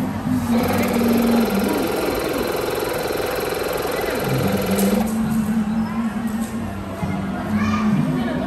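Small electric balloon air pump running steadily for about four and a half seconds as it fills a clear bubble balloon, then cutting off suddenly.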